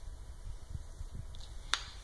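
A single sharp click near the end, over a faint low rumble and a few soft thuds of handling.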